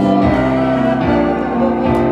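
A woman singing a worship song over her own Roland electric keyboard, with long held notes that change about a second in. A sharp hit sounds near the end.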